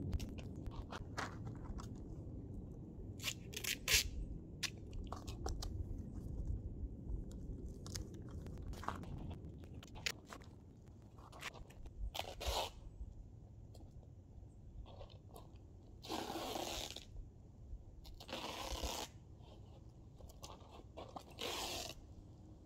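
Cloth duct tape being pulled off the roll in several rasping rips, each lasting up to about a second, in the second half. Before them come scattered crinkling and crunching from a foil-faced insulation mat being handled on gravel.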